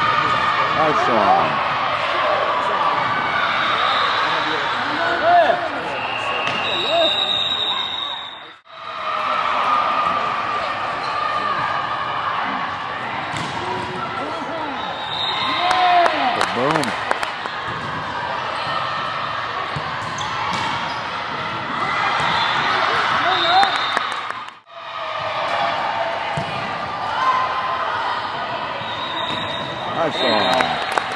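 Indoor volleyball rallies in an echoing gym: the ball being struck, sneakers squeaking on the court, and spectators and players talking and calling out throughout. A few short high whistle blasts come from the referee between points.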